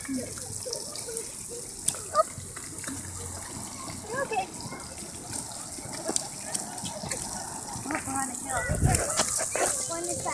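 Splash-pad ground jets spraying small spouts of water, a steady hiss, with scattered voices of people and children around.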